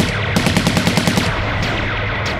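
Rapid automatic gunfire sound effect in a burst of quick shots lasting about a second, with the tail of an earlier burst at the start, over dramatic background music.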